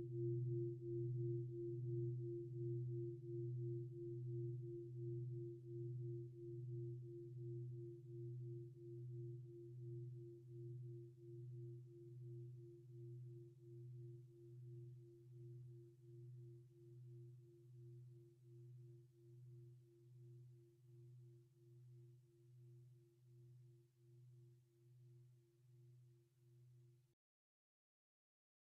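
A meditation singing bowl ringing out after being struck, its two tones wobbling in slow, even pulses as they gradually fade. The sound cuts off suddenly near the end.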